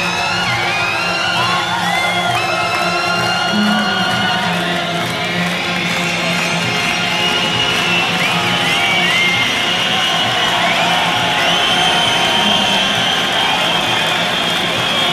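Rock concert crowd cheering and whistling, with high whistles rising and falling throughout, over a sustained low musical chord from the stage.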